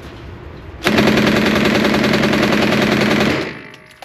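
MAT-49 open-bolt submachine gun firing 9mm on full auto. It fires one continuous burst of about two and a half seconds, starting about a second in, and the gun runs cleanly after its earlier jam.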